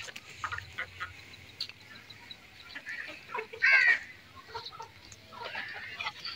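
Chickens clucking, with one louder call a little past the middle, over faint scattered clicks.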